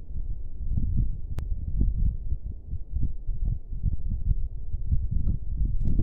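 Low, uneven rumbling on the microphone with one sharp click about a second and a half in.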